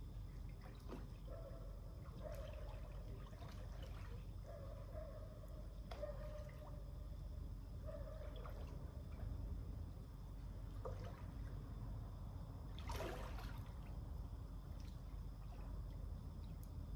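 Swimming-pool water lapping and dripping around a swimmer, with small splashes and one louder splash about thirteen seconds in, over a steady low hum.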